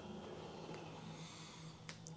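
MotorGuide Xi3 electric trolling motor running with its propeller spinning in the air, a faint steady hum with a faint high whine over it. A single click near the end.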